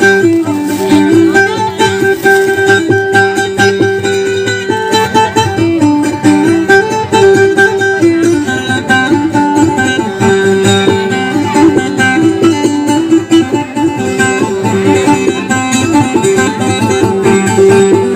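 Acoustic guitar played solo: a plucked melody that keeps returning to a short phrase over a steady drone note, with no singing.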